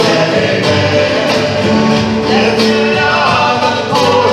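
Live worship band playing a song, with guitars and singing.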